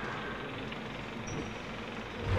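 Faint, steady background noise with a low hum and no distinct events: a lull in the soundtrack.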